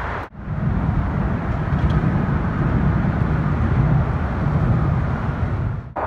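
Steady low rumble of highway traffic, with no voices. It drops out briefly about a third of a second in.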